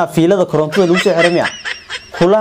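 Only speech: a young man talking animatedly into a clip-on microphone, his voice rising and falling in quick syllables.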